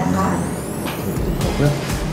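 Speech over soft background music, with a thin high tone gliding steadily upward through the first second and a half.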